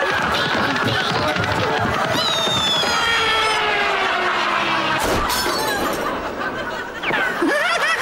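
A sudden comedy crash, a smash like breaking glass, about five seconds in, after a long sound that falls steadily in pitch; shouting voices and music run beneath.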